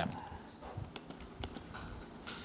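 Typing on a computer keyboard: faint, irregular key clicks.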